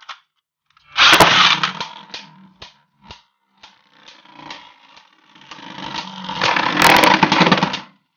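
Beyblade Burst spinning tops in a plastic Zero-G stadium. About a second in, a loud rattling burst as a top is launched onto the dish fades out. Scattered clicks and knocks follow, then a second loud stretch of scraping and clashing near the end.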